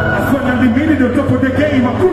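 Male voice rapping into a microphone over a backing track with a sustained deep bass note, amplified through a concert sound system.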